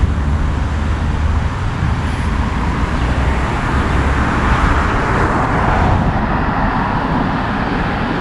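Road traffic on the avenue: steady tyre and engine noise of passing cars, with a low rumble that fades in the first second or two and a hiss that swells about five seconds in and then eases as a car goes by.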